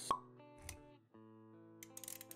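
Sound effects for an animated intro, laid over soft background music. A sharp pop comes just after the start and a smaller hit about two-thirds of a second in. The music cuts out briefly and comes back with held notes about a second in.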